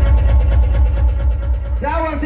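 Live hip-hop music from a concert PA, heard from within the crowd: a deep, heavy bass under a fast, even ticking beat. A voice rises in pitch near the end.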